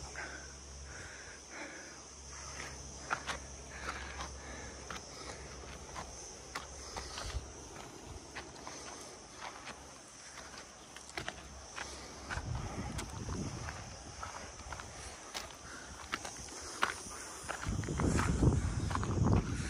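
Footsteps on a dry, stony dirt path, irregular steps scuffing over loose earth and stones, with a steady high insect buzz underneath.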